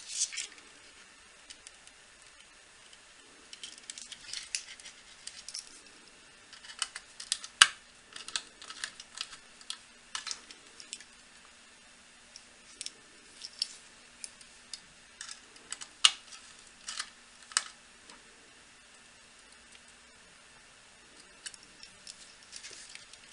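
Hands handling wires and a plastic-mounted circuit board: scattered small clicks and rustles, with a few sharper clicks standing out, the loudest about a third of the way in and again about three-quarters in.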